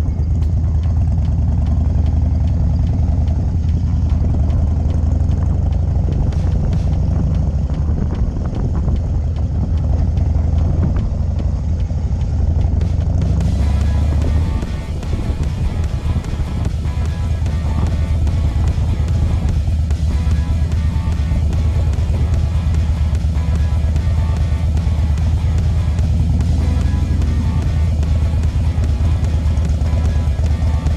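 Harley-Davidson FXDC's V-twin engine running at low speed with a steady deep rumble. Music joins it about halfway through.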